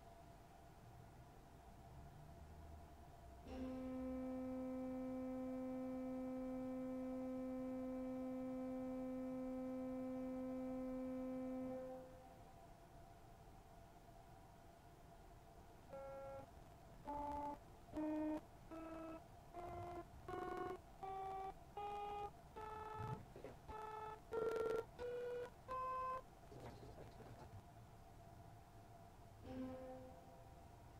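Soft viola da gamba string stop of a Létourneau pipe organ: one held note around middle C for about eight seconds, then, after a pause, a quick series of about a dozen short staccato notes stepping up about an octave. A faint steady hum lies under it all.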